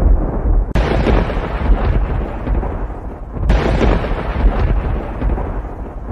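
Thunder sound effect: a continuous heavy rumble with sudden cracks about a second in and again about three and a half seconds in.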